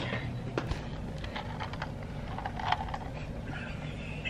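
Close-miked mouth sounds at the rim of a plastic cup, ASMR-style: scattered small clicks and smacks.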